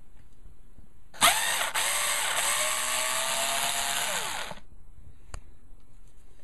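Cordless drill-driver backing out a woofer mounting screw: the motor starts suddenly about a second in, runs steadily for about three seconds, then slows with a falling pitch and stops. A single click follows shortly after.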